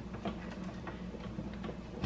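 Faint light clicks and taps at an irregular pace, several a second, over a low steady hum.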